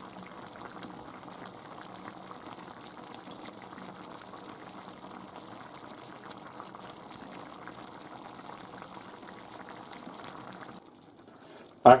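Fish and seafood stew bubbling in an earthenware dish with the heat just turned off, a steady fine crackle of small bubbles. It cuts off suddenly near the end.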